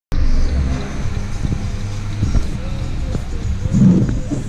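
Music with a deep bass line that steps from note to note, heard inside a car.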